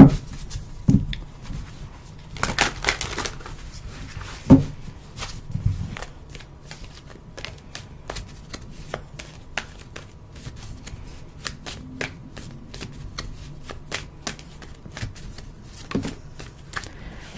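Tarot deck being shuffled by hand: a run of quick, uneven papery clicks as the cards slide over one another, with a few louder knocks in the first five seconds.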